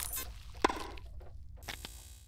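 Quiet sound effects of an animated logo intro: a sharp click a little over half a second in, then a few ticks and a brief swish near the end.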